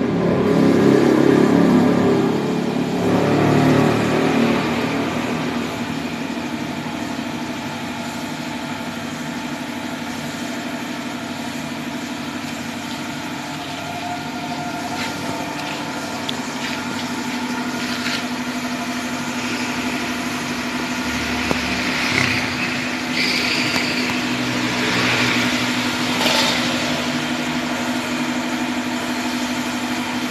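A car engine idling steadily, with a louder low rumble in the first few seconds and scattered knocks and clatter in the second half.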